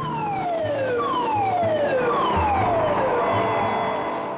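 A siren-like electronic tone falling in pitch three times in a row, each sweep about a second long, over a steady low drone.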